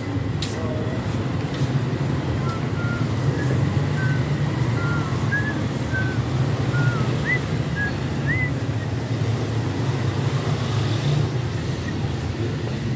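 Steady low rumble of vehicle engines and street noise, with indistinct voices. A string of short, high chirps runs from about two to nine seconds in.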